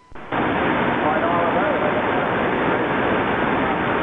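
Radio transceiver speaker giving loud, steady band static that comes up a moment after the transmitter is unkeyed and the receiver opens. A weak, barely readable voice signal lies under the noise.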